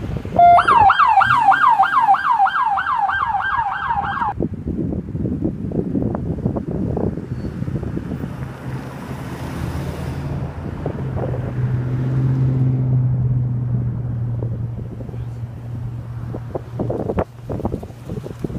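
A siren sounding a fast yelp, rising and falling about four times a second, for roughly four seconds starting half a second in. After it, a vehicle engine runs with a low steady hum that swells a little in the middle.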